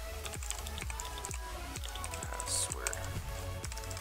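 Computer keyboard typing: a quick, uneven run of key clicks over background music with a steady low beat.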